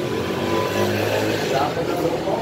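Road traffic: a motor vehicle, such as a passing car or motorbike, runs as a low steady hum for about a second, under people talking.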